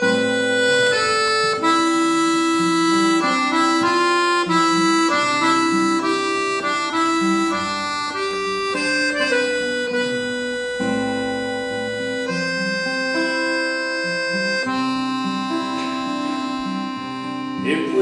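Piano accordion playing a melody of held notes, with acoustic guitar accompaniment: the instrumental introduction to a folk song.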